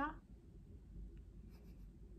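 The tail of a woman's spoken question at the very start, then quiet room tone with faint rustling from handling a plush toy and a few soft clicks about one and a half seconds in.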